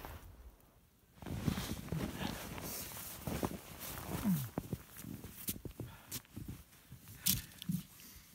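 Footsteps crunching in snow and handling noise, with a few sharp clicks, starting about a second in. About four seconds in there is one short, low grunt that falls in pitch.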